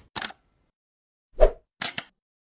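Logo-animation sound effects: a brief swish near the start, a single pop about one and a half seconds in, the loudest of the three, and another brief swish near the end.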